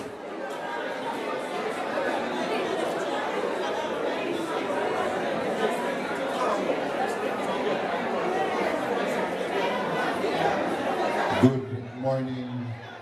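Many people talking at once in a large hall, a loud, marketplace-like chatter of mourners crowding around the casket. Near the end a single voice cuts in over the hubbub.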